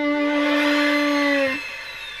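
Violin holding one long note, which stops about one and a half seconds in and fades away in reverb.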